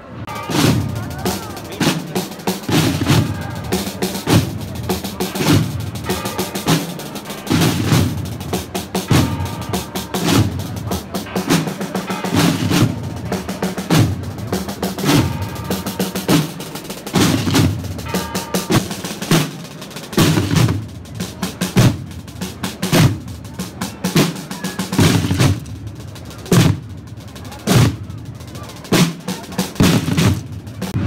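A marching procession drum corps of snare drums with a bass drum beats a steady, repeating march rhythm with rolls, the low beats falling about once a second.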